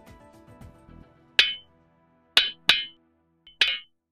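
Background music fading out, then four short, bright clinking sound effects from an animated outro. The second and third clinks come close together.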